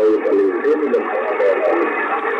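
A single-sideband voice signal received on the 15-metre amateur band through a transceiver's speaker: a thin, band-limited voice under steady static hiss.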